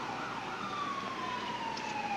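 A siren wail sinking slowly in pitch as one long, even tone.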